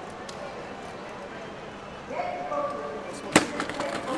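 A single sharp knock about three seconds in as a BMX bike hops up onto a concrete ledge, its peg and tyre striking the edge to start a feeble grind, over low street background.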